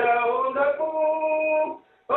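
A solo voice singing a tune, rising into a long held note that stops shortly before the end.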